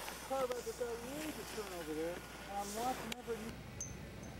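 A person's voice, faint and without clear words, for about three seconds, then a single sharp click.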